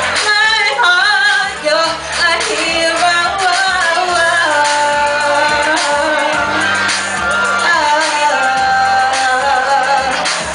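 A woman singing live into a handheld microphone over musical accompaniment with a steady bass line. Quick sliding vocal runs in the first few seconds give way to long held notes.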